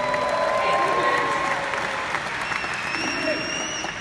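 A large audience applauding, with a few voices calling out over the clapping.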